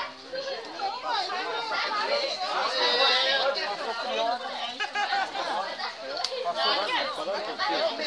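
Overlapping conversation of several people talking at once, with no single voice standing out.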